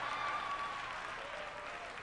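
Congregation applauding, a steady patter of clapping that slowly fades away.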